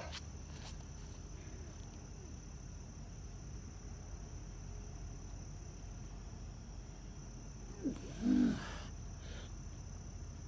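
Night insects trilling in one continuous high-pitched drone. About eight seconds in there is a short grunt from the man doing pushups.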